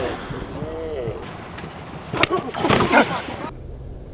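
People laughing in bursts, with wind noise on the microphone.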